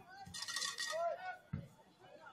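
Brief bits of people's voices near the microphone, with a short hiss about half a second in and two dull thumps, one near the start and one about one and a half seconds in.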